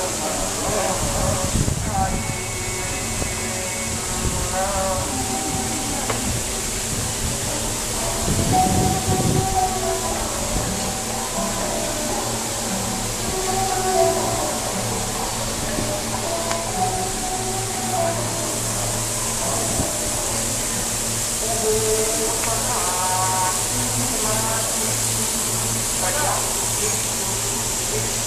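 Indistinct voices of people talking, with music in the background, over a steady low hum and faint hiss.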